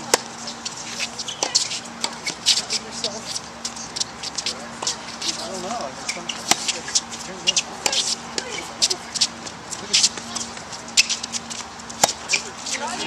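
Tennis rally in a women's doubles match: sharp racket-on-ball strikes, about one every one to two seconds, over a faint murmur of voices and a steady low hum.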